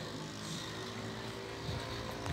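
Steady background noise with a faint, even hum, without any distinct events.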